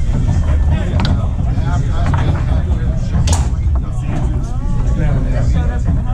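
Foosball play: a few sharp knocks of the ball and plastic men on the table, the sharpest about three seconds in, over background chatter and a steady low rumble.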